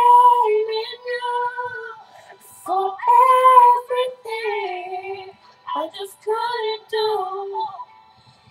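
A young woman singing solo and unaccompanied, in several phrases of long held notes that slide between pitches, with short breaths between them.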